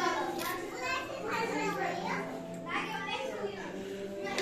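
Several voices at once: children chattering and playing, mixed with people talking.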